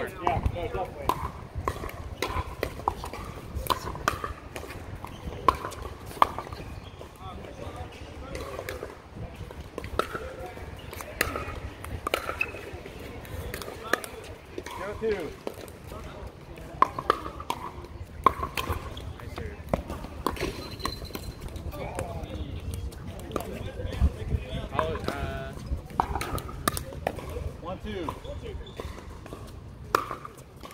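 Pickleball paddles striking a hard plastic ball during singles rallies: sharp, hollow pocks at irregular intervals, with voices in the background.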